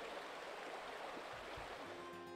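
Shallow stream rushing over rocks in low riffles, a steady, low rushing of water.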